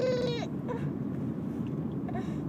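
A toddler's drawn-out, high-pitched vocal sound held on one pitch, a playful Chewbacca impression, ending about half a second in. Steady low road rumble inside a moving car follows.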